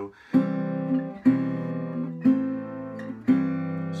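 Metal-bodied resonator guitar fingerpicked, four chords struck about a second apart and each left to ring. The upper notes stay the same while the bass note steps down each time, a C chord over a walking bass line (C, C/B, C/A, C/G).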